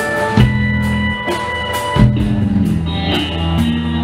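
Live rock band playing an instrumental passage with electric guitar, bass guitar, drum kit and sustained synth keyboard tones, without vocals. The bass moves to a new note about every second and a half under steady drum strokes.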